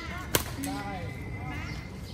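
Badminton racket striking a shuttlecock once, a single sharp crack about a third of a second in, followed by a short voice calling out.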